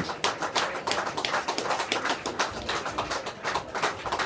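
A small audience applauding: many overlapping hand claps at an irregular pace, just after a song ends.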